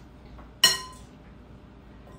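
A metal spoon clinks once against a glass mixing bowl about half a second in, ringing briefly as it dies away.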